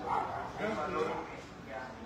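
Indistinct voices of people talking, with no words clear enough to make out.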